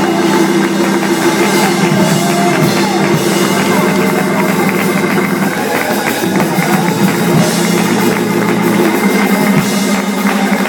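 Live gospel music: a two-manual organ holding sustained chords over a drum kit keeping a steady beat.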